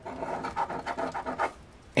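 A coin scraping the latex coating off a scratch-off lottery ticket in rapid short strokes, stopping about a second and a half in.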